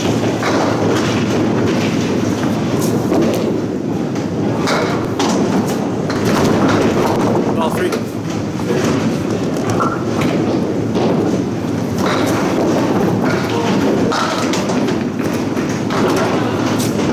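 Candlepin bowling alley din: a steady rumble of balls rolling on wooden lanes, with frequent sharp knocks and clatters of small pins falling, under a babble of voices.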